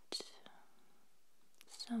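Whispered speech: a short whispered breath or mouth click just after the start, then a whispered word beginning near the end.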